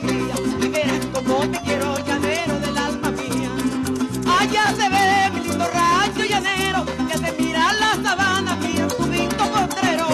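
Venezuelan llanero joropo played on harp, cuatro and maracas, with a steady beat and a bass line stepping under the harp's melody.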